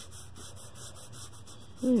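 Felt-tip art marker rubbing over paper in quick, repeated back-and-forth strokes as grey tone is laid down.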